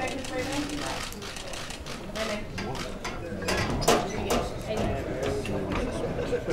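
Murmur of voices from a crowded room, with scattered sharp clicks of camera shutters, the loudest about four seconds in.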